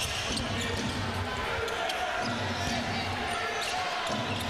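A basketball bouncing on a hardwood court as it is dribbled, over the murmur of crowd voices in an arena.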